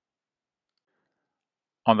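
Dead silence, with no room tone, then a man's narrating voice begins just before the end.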